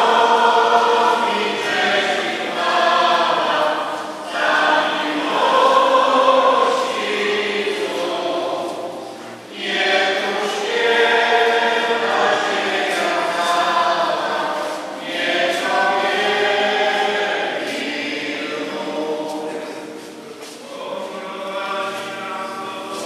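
A group of voices singing a Communion hymn together in a church, in phrases of about five seconds with short breaks between them.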